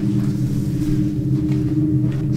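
A steady low drone: several held low tones over a rumble, unchanging throughout.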